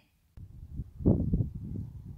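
Wind buffeting the microphone outdoors: an irregular low rumble that starts suddenly about a third of a second in and swells in gusts.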